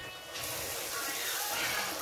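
Wooden spoon stirring eru greens and ground crayfish in a pot, a steady rustling scrape that starts about half a second in.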